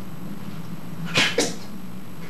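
Two quick, sharp slaps of a hand on bare skin, about a fifth of a second apart, struck during Sanchin stance testing (shime). A steady low hum runs underneath.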